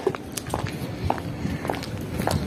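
Footsteps on a concrete rooftop, a sharp step about every half second over a low background rumble.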